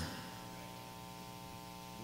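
Steady electrical hum with a stack of even overtones and a faint hiss, from the microphone and sound system.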